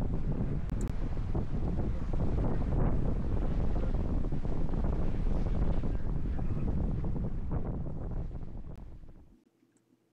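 Wind buffeting the microphone over the rush of water along the hull of a sailboat heeled over and sailing upwind. The sound fades away near the end.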